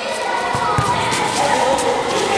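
High children's voices chattering and calling out across the court, with a couple of dull thuds of a futsal ball being dribbled on the concrete floor about half a second in.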